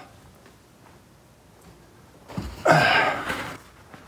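A paper towel being torn from the roll: a loud ripping, rustling burst of about a second, a little past halfway through, after a quiet start.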